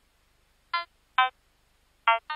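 Two short, bleeping software-synthesizer notes from a sparse sequence, about half a second apart, the second lower in pitch than the first.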